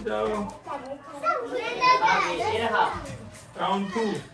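Children's voices chattering and calling out over one another, loudest about two seconds in.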